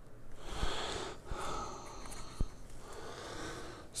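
A person breathing close to the microphone in two long, soft breaths, with a few faint clicks.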